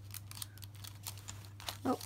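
Faint paper crinkles and small clicks as paper pieces are handled and pressed onto a journal page, over a low steady hum.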